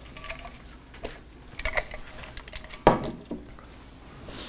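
A stainless steel travel mug handled and set down on a wooden pulpit: a few faint clinks, then a sharp knock about three seconds in.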